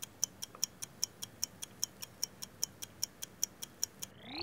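Ticking-clock sound effect: crisp, evenly spaced ticks, about five a second, stopping near the end.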